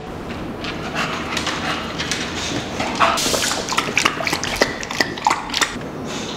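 English bulldog panting with its mouth open, among scattered short clicks and knocks.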